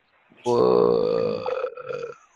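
A man's drawn-out, low vocal sound, a single held voice lasting just over a second and starting about half a second in, sagging slightly in pitch as it fades.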